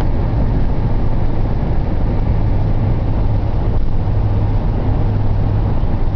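Motorhome engine running steadily, a loud low drone with no change in pitch.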